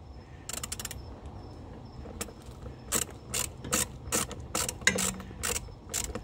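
Socket ratchet wrench clicking as it tightens a bolt down. A short burst of clicks comes just after the start, then a steady run of about three to four clicks a second from about two seconds in.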